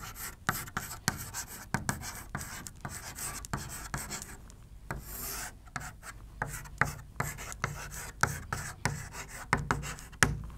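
Chalk writing on a chalkboard: quick taps and scratches as letters are formed, with a longer continuous scrape about five seconds in as a straight line is drawn.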